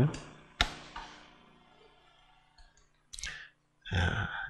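A computer mouse clicked: one sharp click about half a second in and a fainter one soon after.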